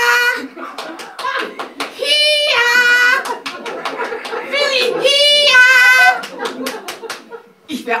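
A woman's shrill, drawn-out high calls imitating a dog owner coaxing her dog, each swooping up and then held, about two seconds apart, with quick pats of hands on thighs between the calls.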